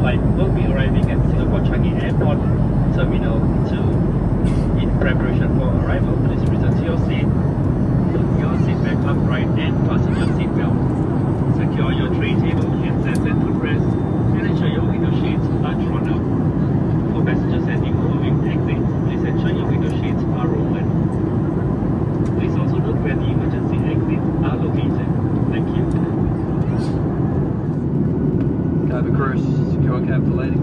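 Steady cabin rumble of a Boeing 737 MAX 8 in flight, with a cabin-crew announcement coming over the cabin speakers above it.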